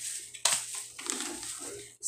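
Plastic packaging crinkling as product packets are handled, with a sharp crackle about half a second in.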